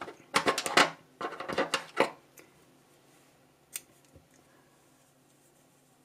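A few short handling sounds in the first two seconds, then a single sharp snip of scissors cutting the yarn to finish off a crochet piece, about three and a half seconds in.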